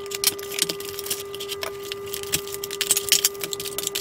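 Hands opening a cardboard box and handling the packaging and parts: a busy run of small clicks, taps and rustles, over a steady hum.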